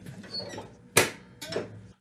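Riding mower's clutch pedal and parking-brake linkage being worked by hand, with one sharp metallic click about a second in and a few softer knocks; pushing the clutch in and setting the brake takes the tension off the drive belts.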